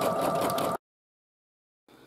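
Singer Futura embroidery machine stitching with a steady whirring hum. It cuts off abruptly under a second in, leaving about a second of dead silence and then faint room tone.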